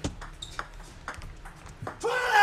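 Table tennis ball clicking off the bats and the table as a point opens with a serve: a quick, irregular run of sharp, light taps, several a second.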